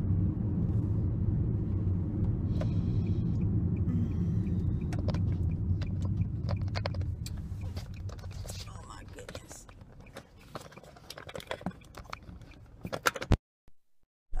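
Steady low rumble of a car interior that fades away partway through, followed by close rustling and sharp clicks of a clip-on microphone being handled and fitted, and a brief cut to silence near the end.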